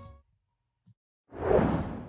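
Silence for about a second, then a whoosh sound effect swells in and fades away.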